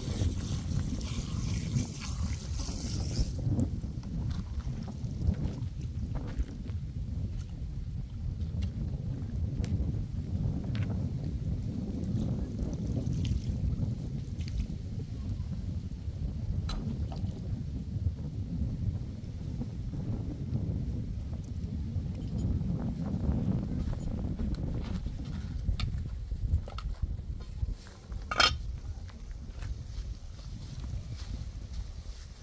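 Wind buffeting the microphone as a steady low rumble. For the first few seconds water runs and splashes as a metal pot is rinsed under a hose, and a few light clinks follow, the sharpest near the end.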